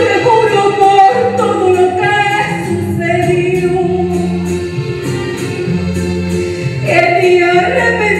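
A song sung over backing music: long, wavering sung notes over a bass line that changes note about once a second.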